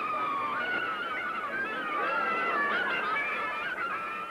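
A flock of geese honking, many calls overlapping without a break.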